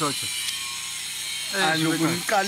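A man's voice speaking in short phrases, broken by a pause of about a second that holds only a steady background hiss; the talking starts again near the end.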